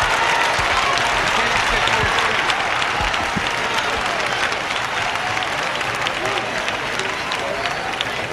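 A large arena audience applauding, a dense patter of many hands with scattered voices in the crowd, easing slightly near the end.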